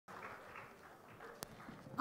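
Faint audience applause and crowd noise, thinning out after the first second, with one sharp click about one and a half seconds in.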